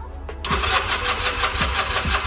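Electric starter cranking the 2009 Honda Rebel 250's engine, a rapid even churning that begins about half a second in, without the engine catching. The failure to fire points to a gummed-up carburetor from long storage, as the owner expected.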